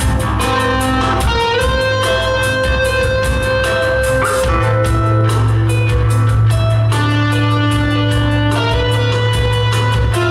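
Live progressive rock band playing: Chapman Stick, touch guitar and two drum kits. Rapid, evenly spaced picked notes and drum hits run over a sustained low bass note that swells about halfway in.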